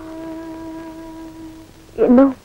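Soft film background music: a single long note held at a steady pitch, fading out near the end.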